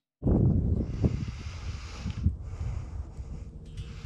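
Wind buffeting the microphone in low gusts, strongest just after it starts and easing off, with a light rustle of dry leaves.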